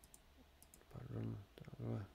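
A few faint computer mouse clicks. A man's wordless voice makes short hesitation sounds about a second in and again near the end, louder than the clicks.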